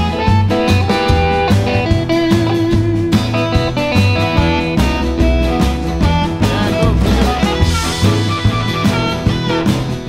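Band music from a studio recording: guitar playing over bass and a drum kit.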